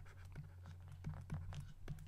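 Stylus writing on a tablet: faint, irregular scratches and light taps of the pen tip, over a steady low hum.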